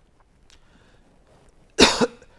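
A man's single short cough near the end, after a quiet stretch.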